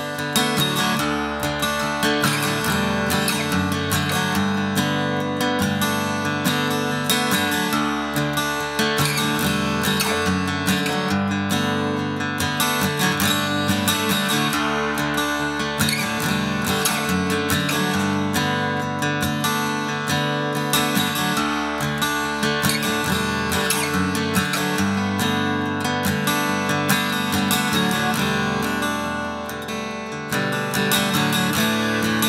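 Steel-string acoustic guitar strummed in a steady rhythm, playing a song's accompaniment. It is a big-bodied guitar with plenty of low end.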